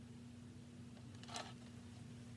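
Near silence: room tone with a faint steady low hum and one soft, brief noise about one and a half seconds in.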